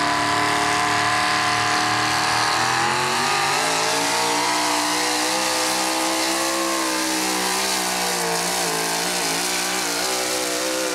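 A 4wd pickup pulling truck's engine running at high revs as it pulls a weight sled. The pitch is held steady for about three seconds, then sags and wavers up and down as the truck works its way down the track under load.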